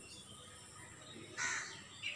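One short, rough bird call about one and a half seconds in, over faint outdoor background noise.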